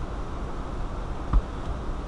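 Steady low hum and noise of a car cabin, with a single short click about a second and a half in, as a finger presses the centre-console radio and climate controls.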